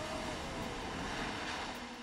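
Steady rushing noise of a fast muddy floodwater torrent, as picked up by a phone recording. A faint tone slides downward and fades out in the first second.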